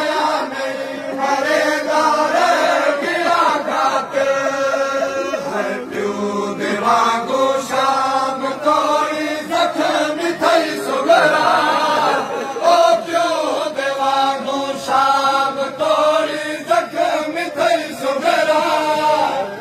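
A noha, a Shia mourning lament, chanted by a group of men's voices together in continuous sung phrases.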